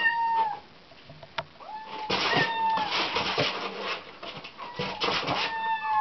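A young kitten meowing three times, high-pitched calls each dropping slightly at the end, with rustling noises between them.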